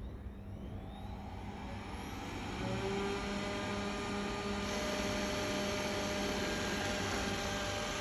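Xiaomi Roborock S5 robot vacuum starting up: its suction fan spins up with a rising whine over the first two seconds, then runs steadily with a hum. A brighter hiss joins about four and a half seconds in, as the robot drives off its charging dock.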